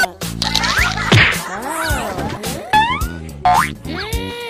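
Comic cartoon sound effects over background music: several springy, boing-like pitch glides rising and falling, with sharp whacks among them.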